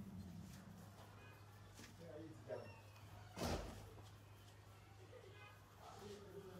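Quiet background with a steady low hum, and one brief rustle or bump about three and a half seconds in.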